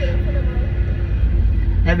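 Tour bus engine and road noise heard from inside the cabin while the bus is moving: a steady low rumble with a faint steady hum above it.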